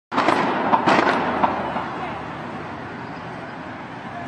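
About five gunshots in quick succession within the first second and a half, sharp cracks with a short echo, followed by a steady din of street noise and voices.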